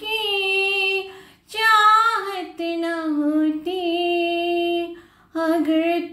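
A woman singing a Hindi film song with no accompaniment, holding long vowel notes with slow pitch bends. Two short breaks for breath, about a second and a half in and near the end.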